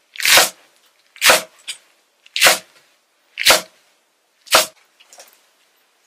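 A kitchen knife cutting through a bunch of chives onto a thick wooden chopping block: five crisp, short slicing chops about one a second, with a faint lighter tap after a couple of them.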